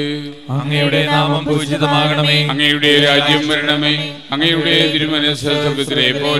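Priest chanting a Syro-Malabar liturgical prayer in Malayalam, one man's voice holding long, even notes, with short breaks for breath about half a second in and again about four seconds in.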